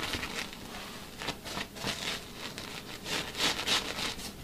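Scrub brush scrubbing the wet, fleece-like inside of a microfiber sofa cushion cover, working cleaning spray into the fabric. Short scratchy strokes, about three or four a second.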